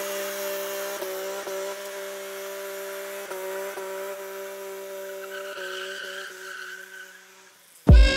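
BMW E30 M3 doing a burnout: the engine is held at high revs in a steady note with brief dips every second or so, over the hiss of the spinning rear tyres. The sound fades out near the end as the car pulls away.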